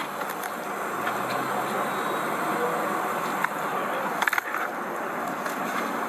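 Steady outdoor vehicle and traffic noise, with a short burst of sharp clicks and rattles about four seconds in.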